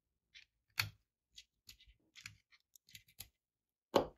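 Scattered small clicks and taps of metal tweezers and plastic jumper-wire connectors being pushed onto a sensor board's header pins. A louder click comes a little under a second in, and another at the very end.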